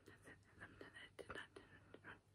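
A woman whispering faintly under her breath, otherwise near silence.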